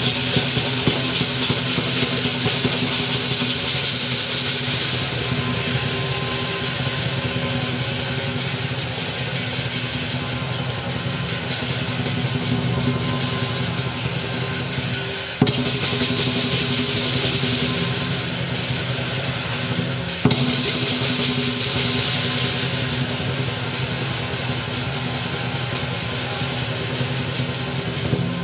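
Southern lion dance percussion: a large lion drum beaten in fast, dense rolls with crashing cymbals and a ringing gong. The playing is continuous, with sudden loud accents a little past halfway and again about five seconds later.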